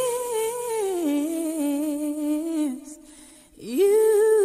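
A woman's voice singing long, held notes almost unaccompanied. It slides up into a high note, steps down to a lower held note and fades about three seconds in, then slides up into another held note near the end.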